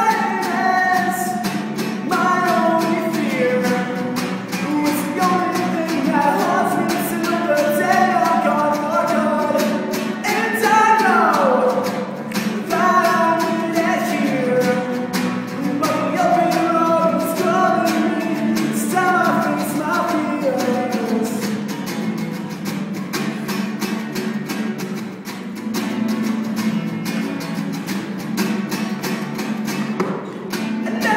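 A solo voice singing an original song to a strummed acoustic guitar, echoing off the concrete walls of a cement silo. About a third of the way in, the voice slides down in one long falling glide.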